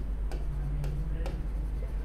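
A pen tip ticking against the screen of an interactive whiteboard while a word is handwritten on it: three sharp, irregularly spaced clicks.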